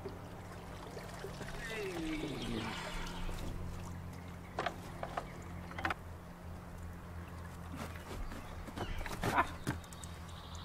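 A heavy submersible pond pump (Oase Aquamax Eco 16000) being lifted out of the water and handled on a wooden handrail: a short falling groan of effort early on, then several sharp knocks of the pump's plastic housing against the wood, the loudest near the end, with a little water trickling off. A steady low hum runs underneath.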